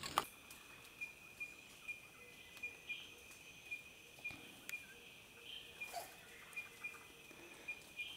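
Faint, steady high-pitched trill of an insect, pulsing evenly, with a few scattered faint clicks.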